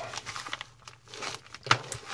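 Plastic mailing envelope crinkling and rustling as it is cut open and handled, with one sharp click near the end.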